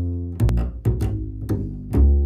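Upright double bass played pizzicato: a run of plucked notes, each with a sharp attack that rings and fades before the next.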